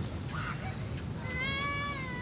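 A child's high-pitched, drawn-out squeal, starting a little past the middle, held level and then wavering.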